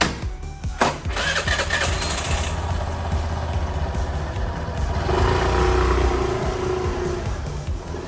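Suzuki Burgman 125 scooter's single-cylinder engine, its engine and transmission oil freshly changed, starting about a second in and running, then revving up as the scooter pulls away around five seconds in. Background music plays throughout.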